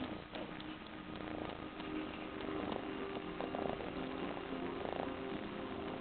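Kitten purring steadily up close while kneading a fleece blanket, making biscuits.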